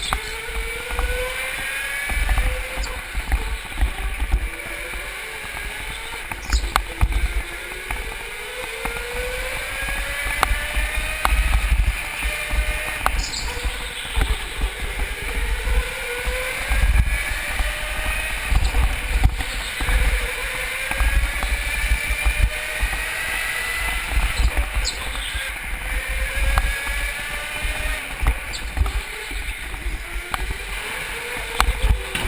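Go-kart motor heard from onboard, its whine rising in pitch as the kart accelerates out of each corner and dropping off again, several times over. Underneath runs a heavy low rumble, with a few short knocks.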